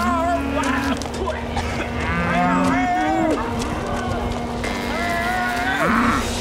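Cattle mooing: several drawn-out moos overlapping and sliding in pitch, some held for about a second, over a steady low hum.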